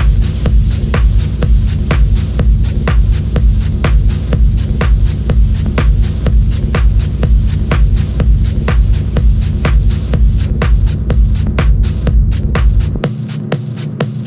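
Techno track: a steady run of sharp, high clicks about four a second over a deep, throbbing bass line and a held low tone. About thirteen seconds in, the bass drops out and the clicks carry on alone.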